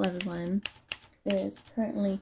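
A woman speaking in short phrases, with several short, sharp clicks between her words.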